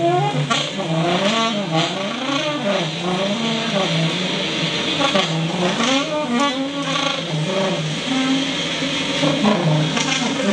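Alto saxophone in free improvisation, run through live electronic processing: several layered pitches slide up and down in continuous wavering swoops.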